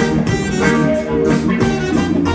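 Live band music with guitar and drum kit playing a steady beat, no singing.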